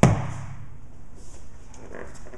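A single sharp, heavy thud as a knife blade strikes a padded vinyl punching mitt swung into it, dying away within a fraction of a second.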